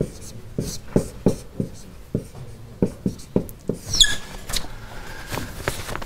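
Whiteboard marker squeaking against the board in short, quick strokes as equations are written, about three strokes a second, with one brief high squeak near the middle; the strokes thin out in the last couple of seconds.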